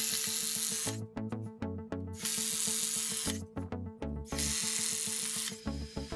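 Cordless drill boring into pine boards in three bursts of about a second each, over background music.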